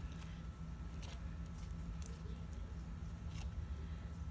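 Faint kitchen handling sounds while tostadas are being assembled: a few light taps and scrapes over a steady low hum.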